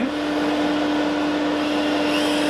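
Dust extractor running steadily: a constant motor hum under the rush of air through the ducting.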